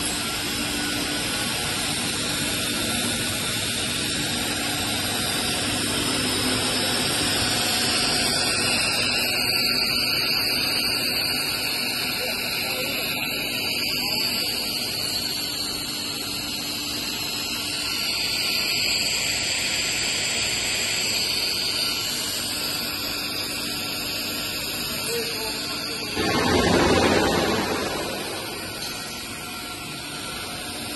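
Steady machine noise of a running plastic pipe extrusion line: extruder, die head and the vacuum calibration tank's pump motors. Near the end there is a brief louder rushing surge.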